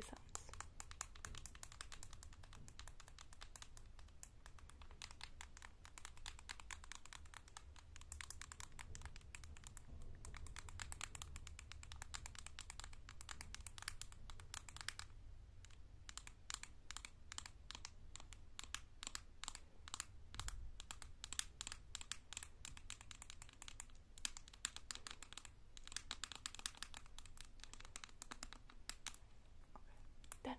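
Long fake acrylic nails tapping rapidly on the pink plastic cap of a heat protector bottle: a fast, steady patter of small clicks with a few brief pauses.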